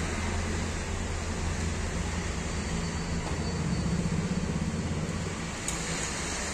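Steady low background rumble and hiss, with a single sharp click near the end.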